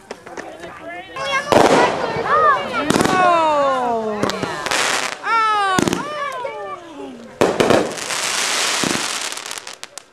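Consumer fireworks going off: a string of sharp bangs about every one to two seconds and long stretches of hissing crackle, the longest near the end. Between the bangs, voices whoop and call out in long falling tones.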